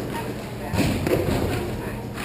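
Two thuds close together, a little under a second in, from hockey play on a hard rink floor: stick and ball impacts, over players' voices in a large hall.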